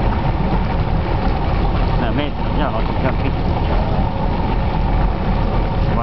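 A boat's engine running steadily, a loud low rumble with no change in pace, with faint voices about two seconds in.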